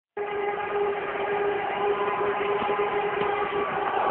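A long, steady horn-like tone held for nearly four seconds over background noise, in a thin, muffled recording.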